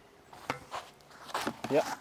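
A tennis racket striking a tennis ball once during a beginner's serve: a single sharp pock about half a second in.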